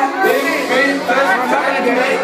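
Loud crowd chatter and overlapping voices over club music.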